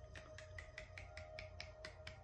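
A quick run of finger snaps, about ten at roughly five a second, over a faint steady tone.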